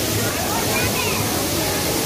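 Artificial waterfall pouring down a fake rock wall, a steady rushing hiss, with people talking in the background.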